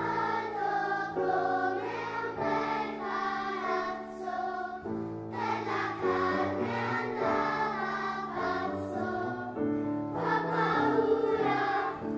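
Children's choir singing a song, with sustained low instrumental accompaniment underneath.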